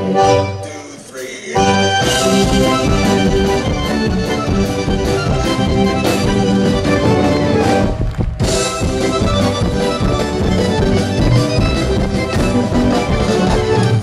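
Live band music with an Elkavox accordion playing lead over a drum kit, with no singing. The music drops out briefly about a second in, then the full band comes back in, and there is a short break just after eight seconds in.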